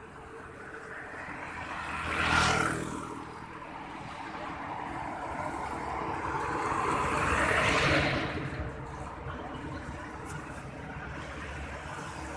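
Road vehicles passing close by: one brief pass about two seconds in, then a longer, louder approach that builds to a peak near eight seconds and fades away, over steady traffic noise.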